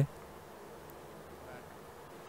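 Faint, steady background noise in a pause between speech, an even low hiss with no distinct events.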